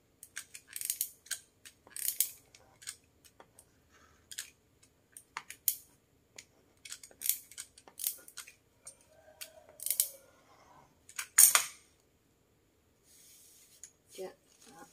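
A sheet of wrapping paper rustling and crinkling in short, irregular bursts as it is handled, pressed flat and glued along a fold with a hot glue gun.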